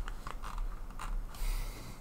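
A few faint clicks and light rattles of small 3D-printed plastic parts being handled.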